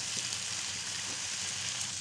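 Beef pieces frying in masala on a hot tawa: a steady sizzling hiss.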